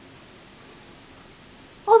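Faint steady hiss of room tone, then a woman's voice starting with "Oh" just before the end.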